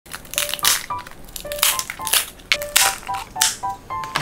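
Thin, baked-crisp nurungji bread topped with sliced almonds being snapped and broken apart by hand, giving a run of sharp, crackling crunches about every half second.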